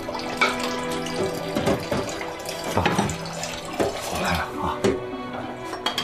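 Kitchen tap running into a sink during washing-up, with frequent clinks and knocks of dishes. Soft background music underneath.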